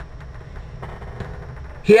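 Steady low background whir of an electric room fan running, heard in a pause between words.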